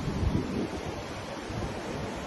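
Ocean surf washing onto a beach, a steady hiss of waves, with wind buffeting the microphone in uneven low rumbles.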